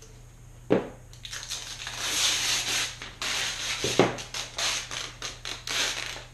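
Clear transfer tape being pulled off its roll and laid over cut vinyl, crackling and crinkling, with two dull knocks, the first about a second in and the second near the middle.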